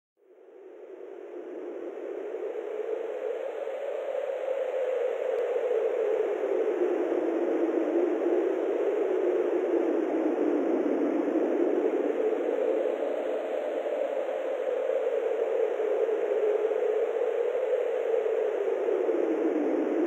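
Rushing-wind sound effect, fading in over the first couple of seconds and then blowing steadily, its pitch rising and falling slowly like gusts.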